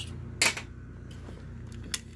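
Handling noise from a hand and the power-supply circuit board on a workbench. There is a brief rustle about half a second in and a sharp click near the end, over a steady low hum.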